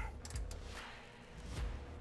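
An 18 mm ratchet wrench tightening an M14 hitch crossmember bolt by hand, as tight as it will go. A short run of quick ratchet clicks comes about a quarter second in, then a couple of faint knocks.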